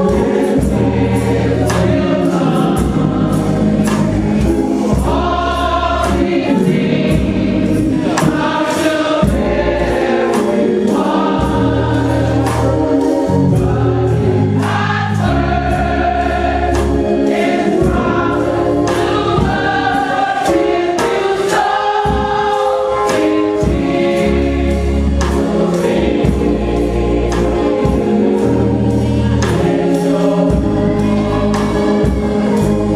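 Gospel choir singing in full harmony, with instrumental accompaniment that carries a low bass part and regular sharp beats.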